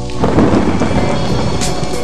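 Rumbling thunder with rain, rising about a quarter second in and fading away, over the sustained tones of a rap song's intro beat.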